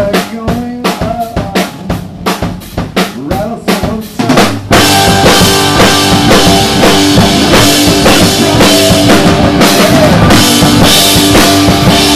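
Live rock band playing. For the first few seconds the drum kit is heard with a sparse picked electric-guitar line. About five seconds in, the full band crashes in together, much louder and denser, with guitars and drums driving on.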